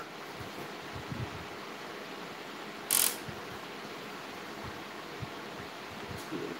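Quiet room tone with a few faint low knocks and one short burst of hiss-like noise about three seconds in.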